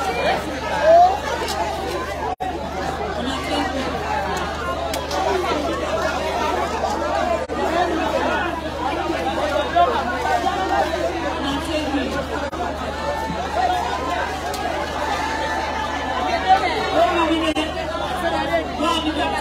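Continuous speech: people talking, with a woman speaking into a microphone, in a language the recogniser did not transcribe.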